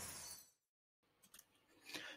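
Near silence: the last tail of intro music dies away in the first half second, then a dead gap with a couple of faint clicks.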